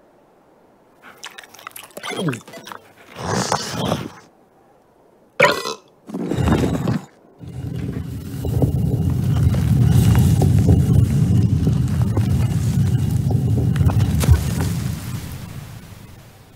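Cartoon camel sniffing several times and giving a short gurgling, burp-like grunt. About halfway through, a long low rumble begins and runs for about eight seconds, fading near the end.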